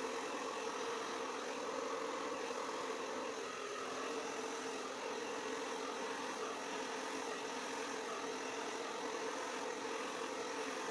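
Hair dryer running steadily on high speed with cool air: an even motor hum and rush of air, held close over wet acrylic paint as it blows the puddle outward.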